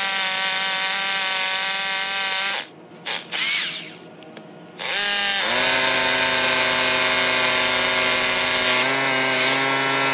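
Corded Bosch SDS hammer drill boring anchor holes into concrete through a bollard's steel base plate for new wedge bolts. It runs steadily, stops about two and a half seconds in, gives a short burst that winds down, then runs steadily again from about five seconds in.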